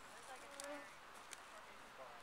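Mosquitoes whining in flight, a faint thin buzz that wavers in pitch as they pass close, with a couple of brief faint ticks.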